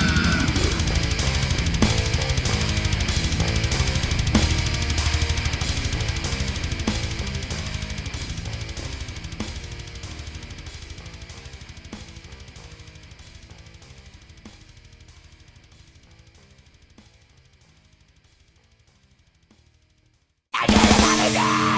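Heavy metal band recording, the drum kit's bass drum, snare and cymbals with bass keeping a steady beat, fading out gradually to near silence by the end.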